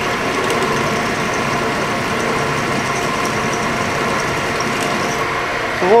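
Vertical milling machine running steadily as a 3/8-inch drill is fed down into a steel tool block, a constant hum made of several fixed tones.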